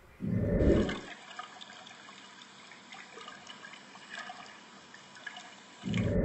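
Reef aquarium water trickling faintly, with small scattered ticks, after a short low rumble in the first second.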